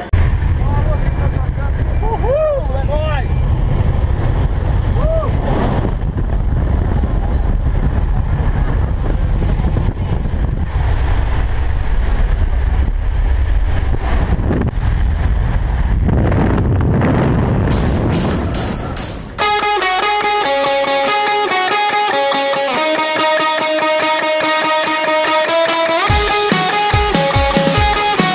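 Steady low roar of aircraft engine and wind inside a small skydiving jump plane's cabin, with faint voices. About three-quarters of the way in it cuts abruptly to rock music with electric guitar.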